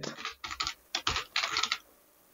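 Typing on a computer keyboard: a quick, irregular run of key clicks that stops near the end.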